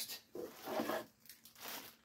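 Plastic packaging and cardboard rustling and rubbing as an item is lifted out of a box, in a few short bursts.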